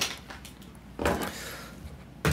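Soft rustle of gear being handled about a second in, among faint small knocks: duty-belt equipment lifted off and set by a tabletop postal scale.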